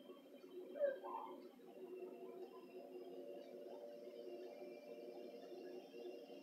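A faint, steady machine hum, with one short gliding squeak-like call a little under a second in.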